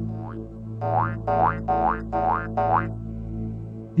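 Cartoon sound effect: a quick run of about six short rising boings, roughly three a second, over a steady background music bed.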